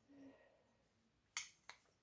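Near silence, broken by two short, light clicks about a third of a second apart about a second and a half in: wooden knife-handle scales tapping against a steel knife blank as they are fitted together by hand.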